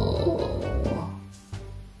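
A woman's drawn-out, excited "ooh" behind her hand, trailing off about a second in, over soft background music.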